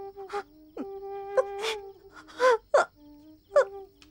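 A woman sobbing in several short, gasping breaths over background music that holds long, sustained notes.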